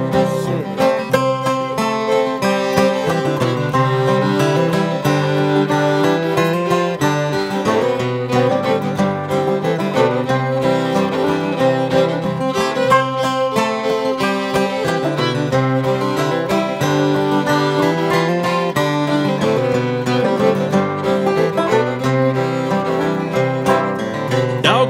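Acoustic string band playing an instrumental break in a bluegrass-style tune: fiddle, acoustic guitar and banjo together, with no singing.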